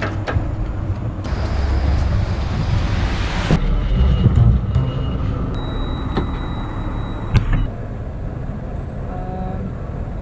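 City street traffic noise, with a hiss lasting about two seconds near the start and several sharp clicks and knocks of doors being pulled open.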